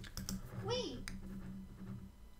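Computer mouse clicks as on-screen word tiles are picked, a few sharp clicks near the start and another about a second in. A short voice-like sound rises then falls in pitch between them, over a steady low hum.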